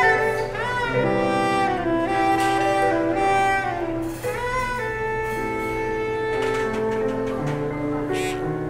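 Live instrumental band music: a soprano saxophone carries the lead melody, sliding up into its notes, over electric bass and keyboard.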